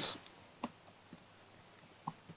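Computer keyboard typing: a few sparse, faint keystrokes, with one clearer click a little over half a second in.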